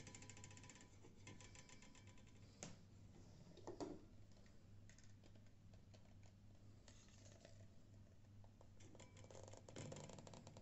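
Near silence: a steady low hum of room tone, with two faint brief knocks about two and a half and four seconds in.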